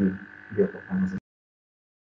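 A man's voice over a video-call connection making a few drawn-out hesitation sounds, with a steady thin tone running underneath. Just over a second in, the audio cuts out abruptly to dead silence.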